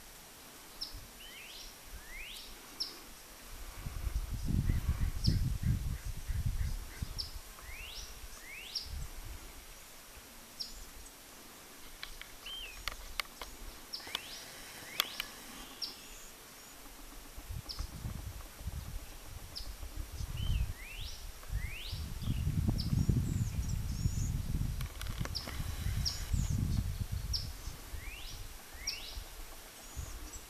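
Songbirds calling over and over outdoors: quick up-sweeping calls and short high chips, repeating every second or two. Twice, for a few seconds at a time, a low rumbling noise rises underneath them.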